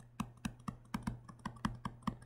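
Stylus tapping on a tablet screen while handwriting a short note: a quick, faint run of light clicks, several a second, over a low steady hum.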